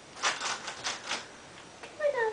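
A quick run of about five short, dry rustling or scraping noises in the first second or so.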